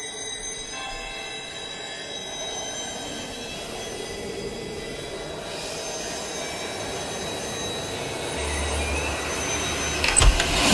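Horror-trailer sound-design drone: a sustained metallic screeching texture with several steady high tones, slowly growing louder, with a deep low rumble joining near the end.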